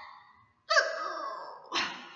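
A woman's mock crying, a sad wordless wail that falls in pitch, followed by a shorter second sob near the end.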